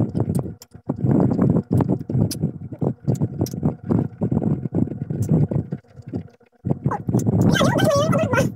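Close-up chewing and crunching of unripe green mango slices, with irregular crisp crunches and mouth clicks. There is a short lull about six seconds in.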